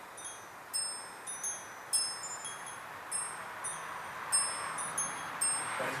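Metal tube wind chimes ringing in a breeze, clear high tones struck irregularly about twice a second, each ringing on and fading, over a soft steady hiss.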